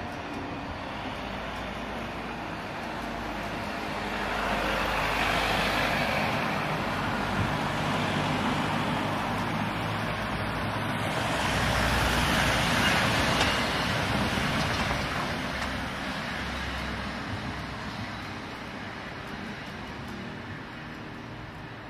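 Road traffic: cars driving past, their tyre and engine noise swelling twice, about five seconds in and again about twelve seconds in, over a steady background of traffic.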